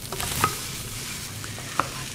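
Vegetables sweating in a frying pan, a steady gentle sizzle with a couple of faint clicks.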